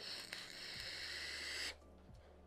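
A vape hit drawn through a Smok TFV18 sub-ohm tank on a Smok Arcfox box mod: a steady hiss of air and vapour pulled through the tank's airflow and coil for about a second and a half, cutting off suddenly.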